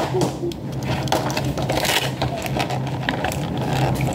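Small plastic packaging being handled: a dense run of crinkling and clicking as a miniature toy is popped out of its packaging, over a steady low hum.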